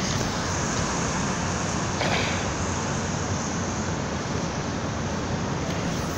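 Steady city street traffic noise, an even hiss with no single vehicle standing out.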